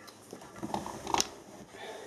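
Handling noise as a digital multimeter and its test leads are picked up and repositioned: faint rustling with a few small clicks, the sharpest just over a second in.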